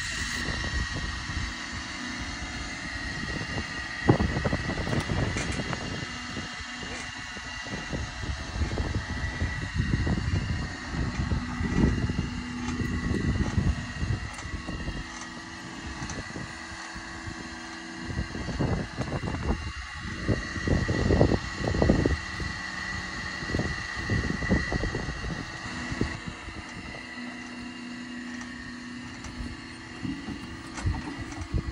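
A motor runs steadily under the whole stretch, with a constant high whine and a lower hum, and irregular low thumps and rumbles over it.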